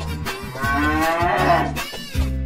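A cow mooing once: a single long moo starting about half a second in, rising and then falling in pitch. It sits over background music with a repeating bass line.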